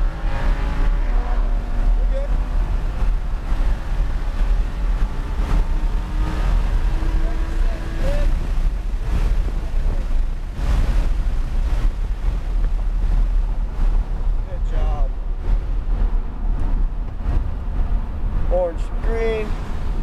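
Lamborghini Huracán LP610-4's 5.2-litre V10 heard from inside the cabin at track speed, then slowing near the end, under a heavy steady rumble of road and wind noise.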